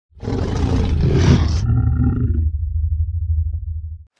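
Channel logo sting: a loud roar-like sound effect for about a second and a half, then a few short held tones, leaving a deep rumble that fades away near the end.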